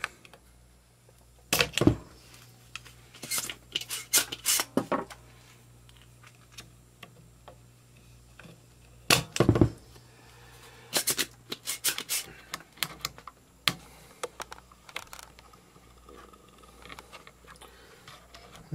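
Irregular clicks and knocks of hand tools working on a tube amplifier chassis during desoldering, with heavier thuds about two seconds in and about nine and a half seconds in, over a faint steady low hum.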